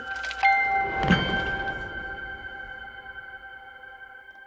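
Horror trailer score: two impact hits, about half a second and a second in, that leave a sustained high ringing chord which slowly fades away.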